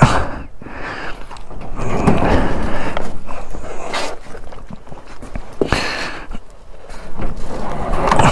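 Heavy breathing close to a helmet-mounted microphone, roughly one breath every two seconds, with rustling and the up-and-over garage door being pulled shut.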